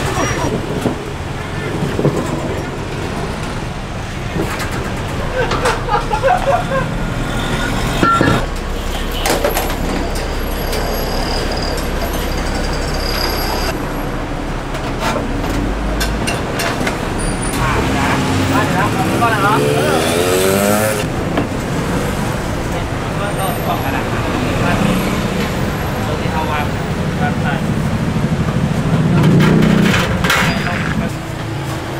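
Busy street traffic: a steady low rumble of vehicle engines with voices in the background, and a motor vehicle's engine rising in pitch as it accelerates about two-thirds of the way through.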